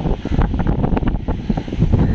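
Wind buffeting the phone's microphone in uneven gusts, with sea surf washing underneath.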